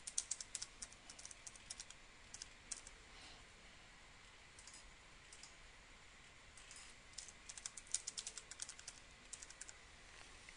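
Faint computer keyboard typing: quick runs of keystrokes in the first second or two, a few more around the middle, and a longer run through the last third, with short pauses between.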